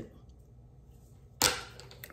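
A single sharp knock about one and a half seconds in, like a small object being set down or dropped on a hard surface.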